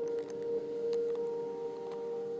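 Live ambient music: a steady held chord of sustained, bell-like tones from keyboard and electronics, with a higher note entering a little past halfway and a few faint clicks.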